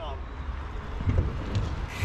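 Bicycle tyres rolling over the skatepark's concrete, with a low rumble, growing steadily louder as the bike approaches.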